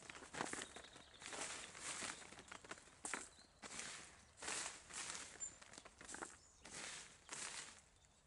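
Plastic harvest sheet rustling and crinkling under hands gathering fallen olives, in a run of short, uneven swells with a few small clicks.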